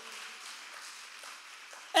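A pause in a woman's amplified speech, filled by a faint, even hiss of background noise with no words. Her voice comes back right at the end.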